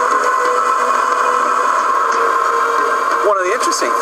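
Steady road noise of a small car driving along a dirt road, its engine and tyres on gravel making an even rush. A man's voice starts near the end.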